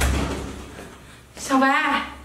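A wooden office door shutting with a thud right at the start, the sound dying away over about half a second; near the end a woman calls out a name, "Xiaobai".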